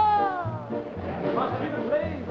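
Male voice holding a sung note that slides down and falls away about half a second in, then more singing, over band accompaniment with a steady bass beat of about two a second.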